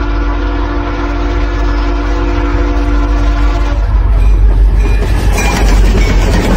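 Train sound effect: a train horn held steady for about four seconds, then the rumble and clatter of the train running on.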